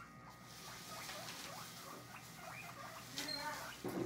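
Guinea pigs wheeking: a run of short, rising squeaks, with a longer, louder call a little after three seconds in. This is the squealing call guinea pigs make when they expect food.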